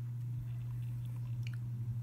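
Fine-tip pen scratching short strokes on paper: faint irregular scratchy clicks that begin about half a second in and come thickest near the end. A steady low electrical hum runs under them.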